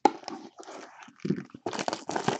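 Clear plastic shrink wrap being torn and crinkled off a trading-card hobby box by hand. It comes in irregular crackling bursts that grow denser in the second half.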